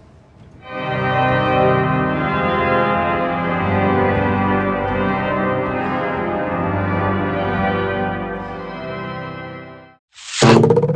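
Fernwerk, the distant echo division of the 1907 Seifert German-romantic pipe organ, played with all its stops: full chords held and changing several times, entering about a second in and dying away near the end. The pipes speak from far away, at the back of the church.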